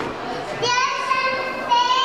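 A child's very high-pitched voice giving two long, level cries, each about a second, over other voices in a large hall.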